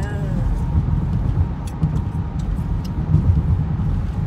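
Low, steady rumble of road and wind noise inside a moving car's cabin, with a few faint clicks.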